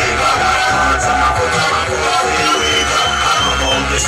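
Loud drum and bass played by DJs over a club sound system, with a heavy bass line and a high sustained synth note in the second half.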